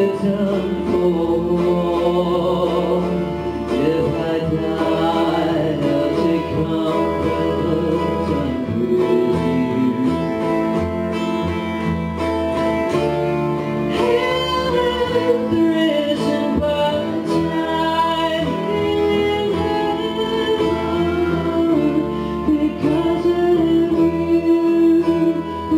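Live acoustic band playing a song: piano accordion, acoustic guitar and upright double bass, with singing.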